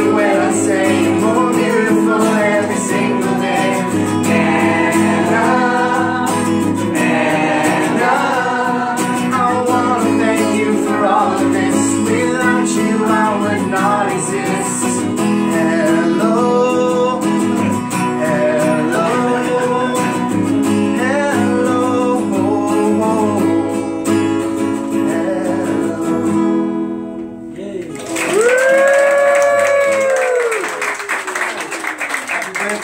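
Acoustic guitar strummed with a group of voices singing along. The music dips briefly near the end, then a single long sung note rises and falls to close the song.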